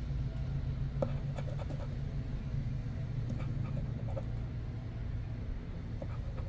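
A metal scratcher coin scraping the coating off a paper scratch-off lottery ticket in short, scattered strokes, over a steady low hum.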